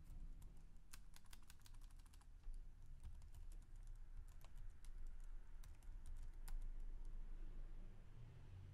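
Computer keyboard typing: a quick run of keystrokes about a second in, then scattered single keys with pauses between them, over a faint low steady hum.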